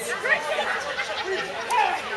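Chatter of several people's voices overlapping, with no clear words.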